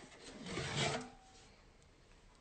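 A glass whisky bottle sliding out of its cardboard gift tube: a soft scraping rub lasting about a second.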